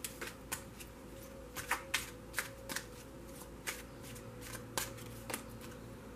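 A tarot deck being shuffled by hand: a series of light, irregular card snaps, about two a second.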